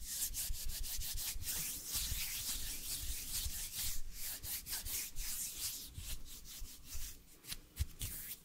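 Bare hands rubbing together close to a microphone: a continuous dry swishing made of many quick strokes.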